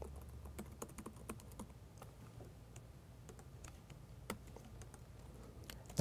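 Faint typing on a computer keyboard: a run of irregular keystrokes, with one louder key press about four seconds in.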